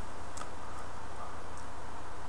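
Faint ticks and crackle from an e-cigarette's standard atomizer firing at 6 volts during a long draw, over a steady low hum.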